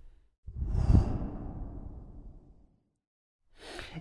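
Edited-in transition whoosh sound effect: a sudden deep swoosh about half a second in, peaking at about one second and fading away over the next second and a half, set between stretches of dead digital silence. A faint breath comes near the end.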